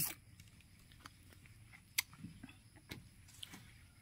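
Mostly quiet, with one sharp crack about two seconds in and a few faint clicks after it: a ripe mata kucing longan's thin shell being bitten open.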